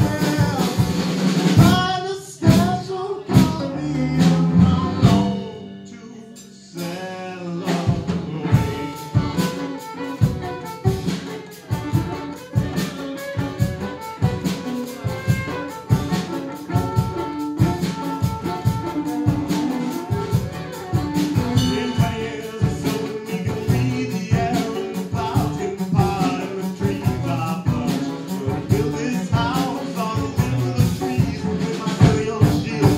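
Live acoustic band playing: accordion, cello, banjo and drum kit. The music thins and quietens about two to seven seconds in, then the full band comes back in with a steady beat.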